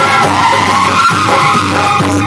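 Loud music played through a rig of horn loudspeakers, with a harsh, noisy spread of sound under the melody lines.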